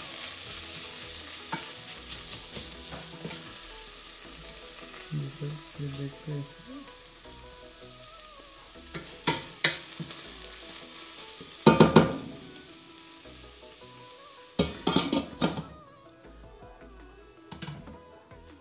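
Food sizzling in a stainless-steel pot as it is stirred with a wooden spatula; the sizzle is strongest in the first few seconds and then dies down. The spatula scrapes and knocks against the pot in several short clusters, loudest about twelve seconds in.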